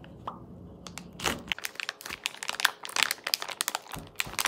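Plastic vacuum-pack bag of ahi tuna steaks crinkling and crackling as it is cut and pulled open by hand, a dense run of crackles from about a second in. A low hum underneath stops about a second and a half in.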